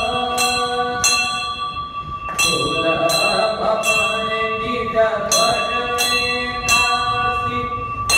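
Temple bell rung repeatedly, about two strikes a second with a couple of short pauses, each strike leaving a steady metallic ring that carries over into the next.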